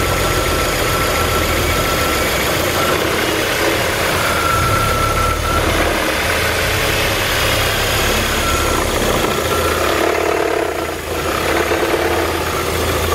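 2006 Volkswagen Passat's 2.0-litre turbocharged FSI four-cylinder idling steadily, heard from above the open engine bay, with a thin whine that comes and goes.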